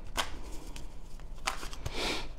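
A deck of tarot cards being shuffled by hand: a few short, sharp card snaps and a brief swish near the end.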